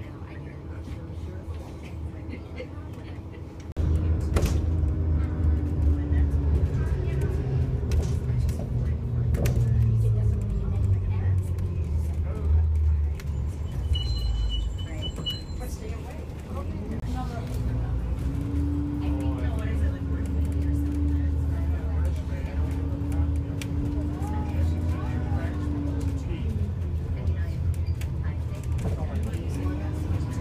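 Interior of a moving light rail car: a steady low rumble of wheels on rail, louder from about four seconds in, under the traction motors' whine, which falls, then rises and holds, and falls again near the end as the train changes speed. A short high beeping comes about halfway through.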